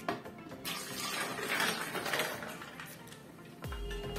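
Milk poured from a glass tumbler into a plastic blender jar: a light clink at the start, then a steady splashing pour lasting about two and a half seconds.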